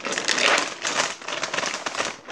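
Dense, irregular crackling and rustling right against the microphone, like a hand or hair rubbing over it.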